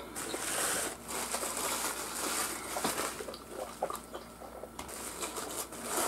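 A person chewing crispy fried chicken wings close to the microphone, an irregular run of crunching and small mouth clicks.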